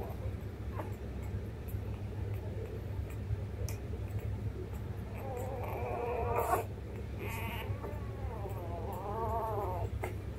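Week-old newborn puppies whimpering: two thin, wavering cries, the first about halfway through and the second near the end, over a steady low hum.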